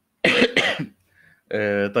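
A short, loud cough about a quarter of a second in, followed by a man starting to speak.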